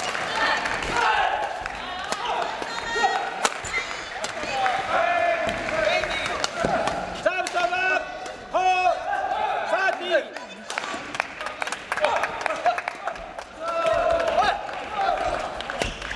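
Badminton hall during doubles play: sharp racket strikes on the shuttlecock and shoes squeaking on the court floor, with players' voices and calls from several courts echoing around the large hall.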